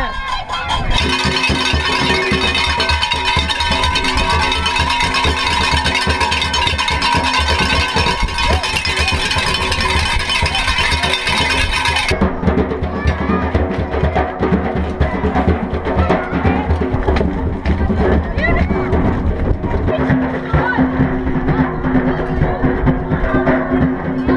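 Junkanoo band practice played live by schoolchildren: steady rhythmic drumming with other instruments, with children's voices over it. About halfway through the sound turns abruptly duller.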